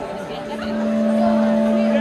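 A steady held note droning from the stage, swelling about half a second in and then holding level, with crowd chatter underneath.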